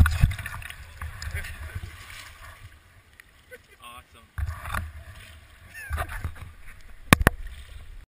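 Handling rumble and knocks on a handheld camera over flowing river water, with two sharp clicks in quick succession near the end.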